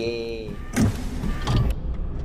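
Sound effects of an animated robot logo intro: mechanical whirring with two sharp metallic hits, about three-quarters of a second and a second and a half in.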